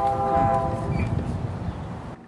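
A long steady horn chord of several tones held together, fading out about a second and a half in, over low wind rumble on the microphone.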